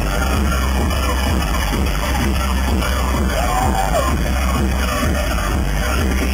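Live pop concert music played loud through an arena sound system, heard from among the audience, with heavy steady bass.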